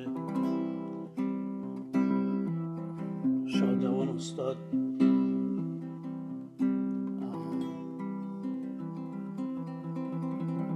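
Nylon-string classical guitar playing a plucked single-note melody in C major, the notes of varying length, each ringing on into the next.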